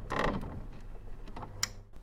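Video-editing sound effect over a title card: mechanical clicking and ratcheting, with a sharp click near the end.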